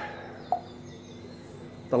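A single brief chirp about half a second in, over a faint steady low hum.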